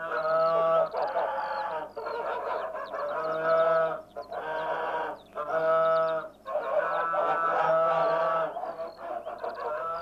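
Two geese honking over and over in a near-continuous string of long calls: territorial alarm at a stranger.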